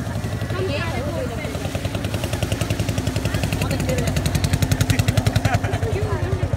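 A boat engine running with a rapid, steady chugging, growing louder from about two seconds in as it draws near.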